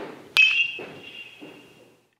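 Metal baseball bat hitting a pitched ball: a sharp crack with a bright metallic ring that dies away over about a second and a half. A dull knock comes just before it.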